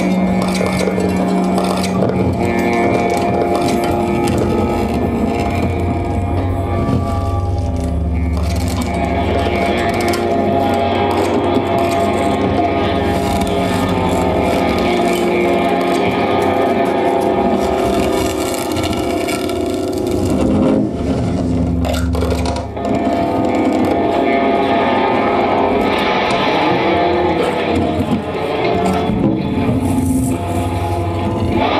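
Free-improvised electroacoustic music for saxophone and live electronics: a dense, continuous layer of held tones over a low drone, with noisy, scratchy texture on top. It dips briefly about two-thirds of the way through.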